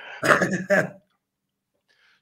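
A man laughing heartily in one loud burst that stops about a second in, followed by silence.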